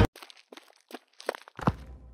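Music cuts off abruptly, then a string of soft, short taps like footsteps, ending in a louder dull thump near the end.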